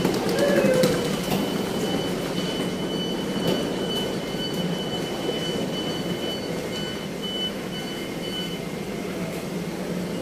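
Deutsche Bahn ICE electric train at the platform: a steady low rumble with a thin, high pulsing tone that stops about eight and a half seconds in.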